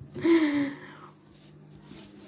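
A person's brief wordless vocal sound, falling slightly in pitch and lasting about half a second, followed by faint handling noise as an embroidery hoop with its fabric is picked up.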